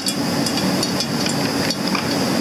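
Several light metallic clicks and taps of hand tools against a tractor transmission's cast housing, over a steady background hum.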